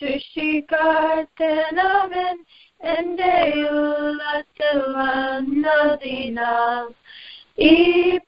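A woman singing a Malayalam Christian worship song unaccompanied, in held phrases with short breaks between them. The sound is cut off in the highs, as over a telephone line.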